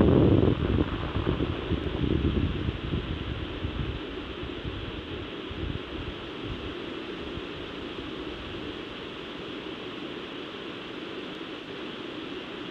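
Rumble of a Falcon 9's first-stage engines during ascent, heard on the launch broadcast. It fades over the first few seconds into a steady hiss as the rocket climbs away.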